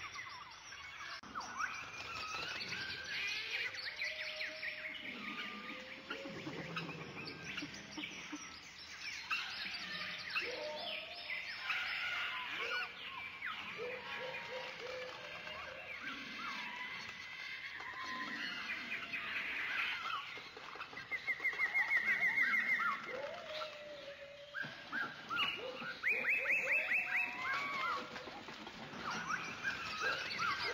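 Many birds calling at once: a steady run of chirps and whistled calls that glide up and down in pitch. Two-thirds of the way through, a rapid pulsed trill is the loudest call, and a few seconds later another short burst of fast trilling follows.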